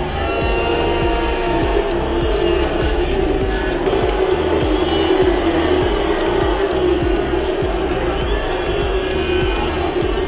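Background music with a steady electronic beat.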